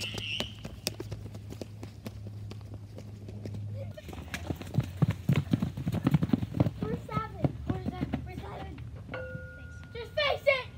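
Footsteps of several children running on wet pavement, a quick irregular patter of footfalls that grows louder about four seconds in. Near the end a steady tone starts.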